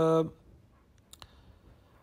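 A man's chanted Quranic recitation ends on a held note just after the start, followed by a near-silent pause with two faint clicks a little over a second in.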